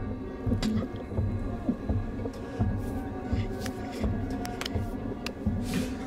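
Horror film score: a steady, low droning music bed with irregular pulsing in the bass.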